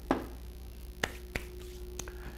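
Three light, sharp taps or clicks: one near the start, then two about a third of a second apart about a second in. A faint steady tone sets in with the second tap.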